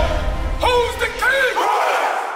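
A crowd of men shouting a call together in loud, overlapping voices, over a low bass that stops a little past the middle.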